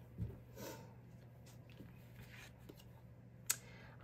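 Faint handling of round cardboard oracle cards being drawn and laid down: a soft thump just after the start, a brief rustle, and a sharp click near the end, over quiet room tone.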